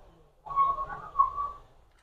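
A soft whistle-like tone, one steady note held for about a second.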